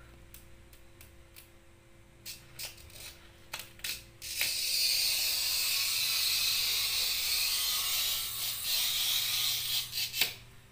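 Glass cutter's wheel scoring a sheet of 5 mm clear glass along a wooden straightedge: a few light clicks as the cutter is set, then about four seconds in a steady, high hiss for about five seconds as the wheel is drawn in one continuous stroke along the line.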